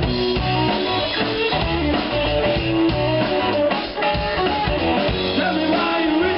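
Live blues-rock band playing: electric guitar over bass guitar and a drum kit, with sustained and bent guitar notes over a steady beat.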